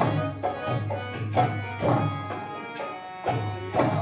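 Kashmiri folk-theatre music: drum strokes about twice a second under a steady held melody.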